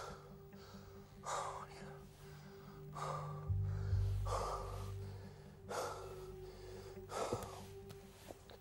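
A man breathing hard in short, heavy gasps about every one and a half seconds. Steady background music plays underneath.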